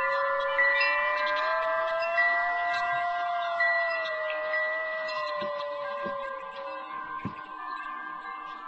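Wind chimes ringing out over a Navajo flute. The flute holds one long note that bends up a little, holds, then sinks and stops about six and a half seconds in. The chimes are struck a few times near the start and gradually die down.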